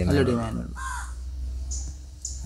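A crow cawing once about a second in: a single short call falling in pitch.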